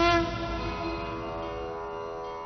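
Background music: a sustained note with its overtones, wavering slightly at first and then fading away.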